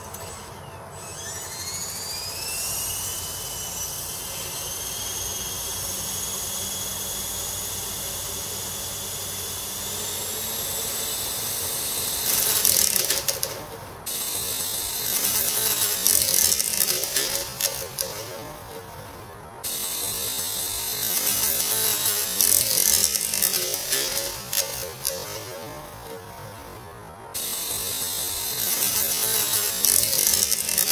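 HK-500 electric RC helicopter spinning up on the ground: the motor and gear whine rises in pitch over the first couple of seconds, then holds steady. From about 12 seconds in the rotor gets much louder with a rushing noise that comes and goes in spells, starting and stopping abruptly, as the out-of-trim helicopter tilts and skids on the grass.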